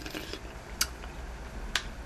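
Two sharp little clicks about a second apart as a spoonful of kimchi stew is tasted, over a low steady hum.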